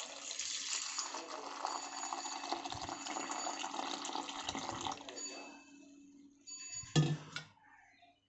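Milk pouring in a steady stream into a steel mixer-grinder jar onto ground dry-fruit paste, stopping about five seconds in. A single short knock follows near the end.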